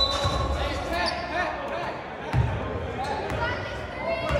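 Basketball bouncing on a gym floor, a few dull thumps, over the chatter of voices in a large hall.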